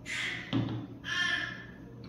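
A breathy exhale after a sip of whiskey, then a shot glass set down on a table with a dull thunk about half a second in, followed by another short breathy sound about a second in.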